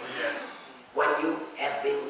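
Speech only: a man preaching emphatically into a handheld microphone, in short loud phrases.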